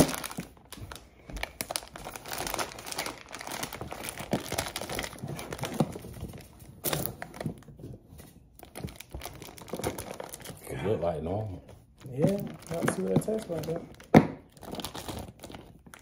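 A Gushers fruit-snack box and its wrapping crinkling and tearing as they are pulled open by hand, with one sharp snap near the end.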